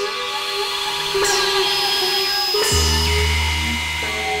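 Experimental electronic music from Novation Supernova II and Korg microKORG XL synthesizers: layered sustained drone tones. A noisy swept hit lands about a second in, and another near three seconds in, where a deep bass tone enters.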